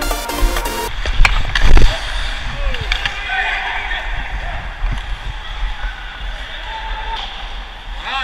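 A pop song with vocals cuts off about a second in and gives way to the live sound of an ice rink on a helmet camera. Skates scrape the ice under a steady noisy haze, and two loud knocks come soon after the music stops, with faint players' voices behind.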